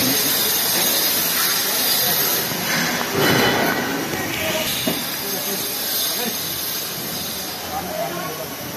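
Steady hiss of construction-site noise with people's voices in it, and a louder scraping noise about three seconds in.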